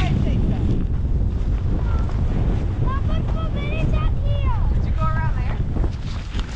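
Steady low rumble and hiss of snow spray and wind hitting a camera microphone held low over snow as the sleds are pulled along. From about three seconds in, children's high voices call out several times over the noise.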